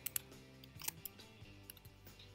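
A few faint clicks of computer keyboard keys in the first second, over quiet, steady background music.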